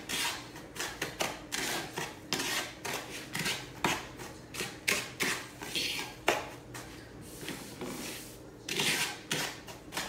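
Metal fork scraping and tapping against a plate while stirring seasoning into flour, in quick, irregular strokes.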